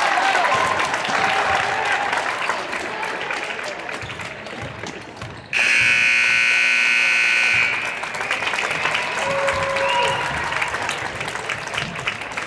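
Gym crowd cheering and clapping. About five and a half seconds in, the scoreboard horn gives one loud, steady buzz of about two seconds, the horn that ends the game, and the crowd carries on after it.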